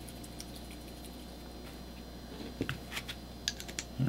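Small plastic reagent vials being handled: a scatter of faint, light clicks and taps in the second half as the capped tubes are shaken and one is set into the foam rack, over a steady low hum.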